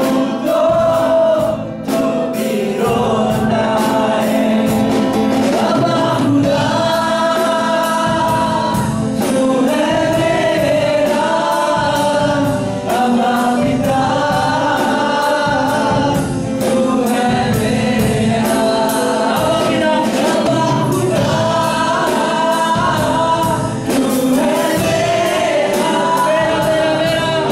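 A Hindi praise-and-worship song sung live: a male lead singer on a microphone with the congregation singing along in chorus, over a drum kit keeping a steady beat.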